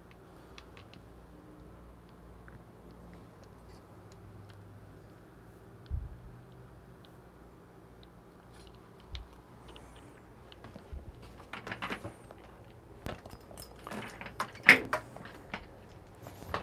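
Scattered knocks and clicks of a phone camera being handled and carried: a single thump about six seconds in, then a busier run of knocks and rustles in the last five seconds, over a faint low hum.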